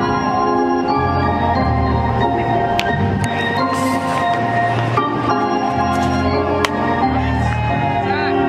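Background music: sustained organ-like chords over a bass line that shifts note every second or so.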